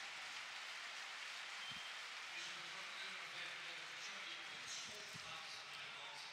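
Faint football stadium crowd noise: a steady wash of many distant voices, with two soft thumps.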